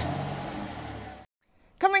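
Steady rushing noise with a low hum from the stationary car, heard from inside the cabin, fading slightly and then cutting off abruptly a little over a second in.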